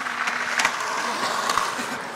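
Skateboard wheels rolling on concrete, a steady rumble broken by a couple of sharp clacks.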